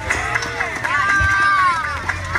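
Children's voices chattering and calling out over one another, with one drawn-out high call held for about a second near the end.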